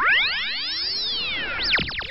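Cartoon laser-beam sound effect: several electronic tones sweep up and arc back down together, with a few quicker zaps near the end.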